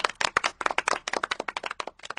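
A small group clapping hands, a quick irregular patter of separate claps that thins out and fades near the end.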